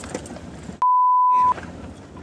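A censor bleep: one steady beep lasting under a second, starting about a second in, with the rest of the sound cut out beneath it. Low vehicle noise from the moving car comes before and after it.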